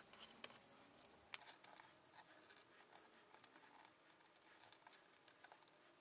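Faint scratching and clicking of heat transfer vinyl being weeded by hand: a hook tool picking at the cut vinyl and peeling scraps off the carrier sheet, with a few sharper ticks in the first second and a half.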